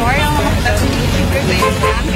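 A young woman talking over the steady low rumble of a moving jeepney's engine and road noise.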